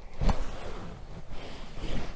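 Light handling noise from the recording device as it is checked for battery: a soft tap about a quarter second in, then faint rubbing and rustling.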